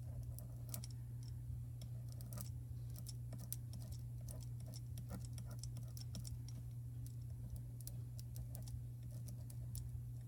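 Light, irregular ticking and crinkling of thin foil as the hot tip of a WRMK fuse tool is drawn across it, tracing a design, over a steady low hum.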